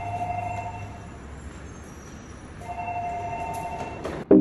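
Hotel lift: a steady low hum, with an electronic two-note tone that sounds until about a second in and again near the end, each time held for over a second.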